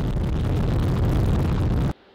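Space Launch System rocket at liftoff, its four RS-25 core-stage engines and two solid rocket boosters making a loud, deep, steady roar that cuts off abruptly just before the end.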